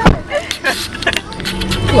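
Car running, heard from inside the cabin: a low steady hum that comes in about one and a half seconds in, after a sudden knock at the very start.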